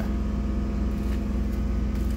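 Steady low machine hum, a motor or fan running evenly.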